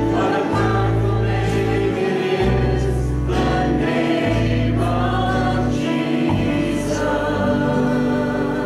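Church worship band playing a contemporary Christian song with voices singing together, over an electric bass holding long low notes that change every second or two.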